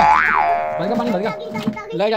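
A cartoon 'boing' sound effect: a sudden springy tone that swoops up and back down in the first half-second, then fades out over about a second and a half, with a voice underneath.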